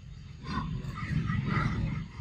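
A monkey calling: a rough, low call starting about half a second in and lasting about a second and a half.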